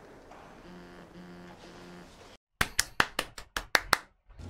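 One person clapping hands: about eight quick, sharp claps in the last second and a half, after a brief silence. Faint low tones from the show's soundtrack come before it.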